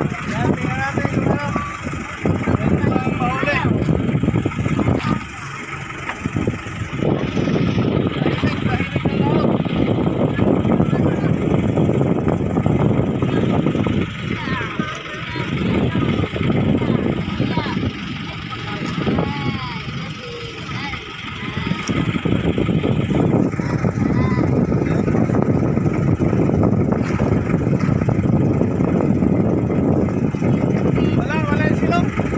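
Outrigger fishing boat's engine running steadily, with voices faintly heard over it; the noise dips briefly a few times.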